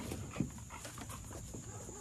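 A dog panting softly.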